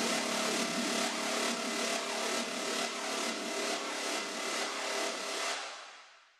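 Electronic dance music from a DJ mix with the bass cut away, leaving a dense, noisy texture over a faint beat about twice a second. It fades out near the end.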